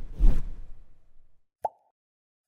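Animated-logo sound effects: a swish with a deep thump at the start that fades away over about a second, then a single short pop near the end.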